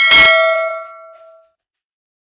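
A plastic container knocks once against the rim of a stainless steel mixing bowl, and the bowl rings with a bell-like tone that dies away over about a second and a half.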